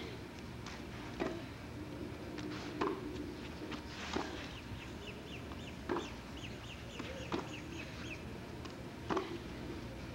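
Tennis ball hit back and forth in a baseline rally on a clay court: about seven sharp racket strikes, one every second and a half or so. A quick run of high chirps sounds through the middle of the rally.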